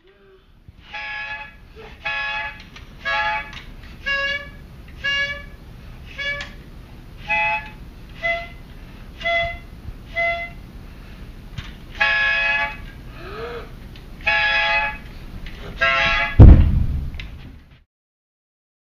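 A child blowing a toy plastic trumpet: about a dozen short toots roughly a second apart, on two or three slightly different notes. A loud thump comes near the end.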